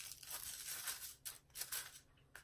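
Short scratchy rustles of a wooden popsicle stick stirring and scooping small crystals and glitter in a small cup, with some crinkling of plastic wrap. There are several brief strokes, clustered in the second half.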